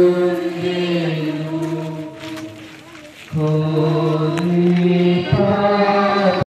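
Slow Christian devotional chant sung in long, steadily held notes. It breaks off about two seconds in and resumes about a second later.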